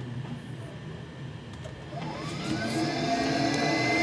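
GMC Envoy's electric secondary air injection pump switching on about halfway through, its motor whine rising in pitch as it spins up and then holding a steady tone.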